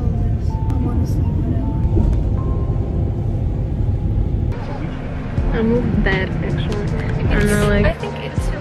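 Low, steady rumble of a coach bus's engine and road noise heard inside the passenger cabin. About halfway through, the rumble drops sharply and talking stands out over it.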